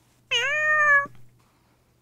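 A single cat meow, under a second long, dipping in pitch and then rising and holding before it stops.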